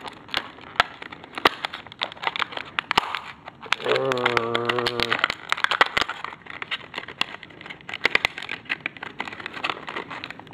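Crinkling and crackling of a clear plastic bag being handled to get a DPD reagent bottle out, a steady run of small sharp clicks. About four seconds in, a voice hums or groans for about a second.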